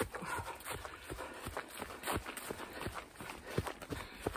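A runner's footsteps on a dirt trail, a steady rhythm of about three strides a second.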